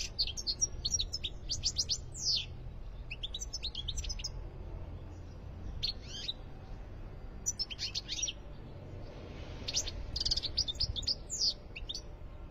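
European goldfinch singing: about five bursts of rapid, high twittering notes with short pauses between them.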